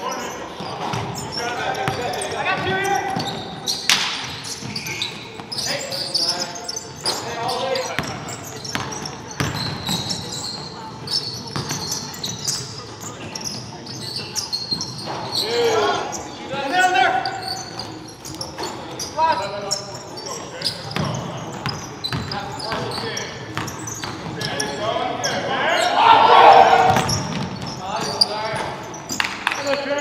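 Basketball bouncing on a hardwood gym floor with repeated sharp knocks, amid players' voices calling out, echoing in a large gymnasium.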